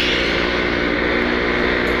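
Suzuki Tornado's single-cylinder two-stroke engine running at a steady, even speed while the motorcycle is ridden, with a constant hum and no change in revs.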